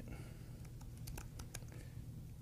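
Faint typing on a laptop keyboard: a handful of separate key clicks at uneven spacing, most of them in the second half.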